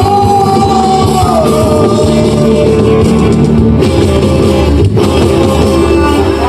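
Live acoustic rock band playing, with strummed acoustic and electric guitars, violin, drums and a sung vocal. A long high held note slides down in pitch about a second and a half in.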